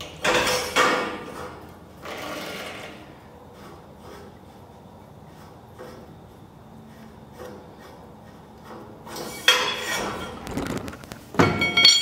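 Steel torsion bar knocking and scraping as it is slid and turned in the chassis tube's reamed nylon bushes. The sounds come in short bouts at the start and about two seconds in, fall quiet in the middle, and return as sharper knocks near the end.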